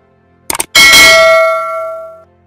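A quick double click, then a bright bell ding whose ringing tones fade away over about a second and a half: the mouse-click and notification-bell sound effect of an animated subscribe button.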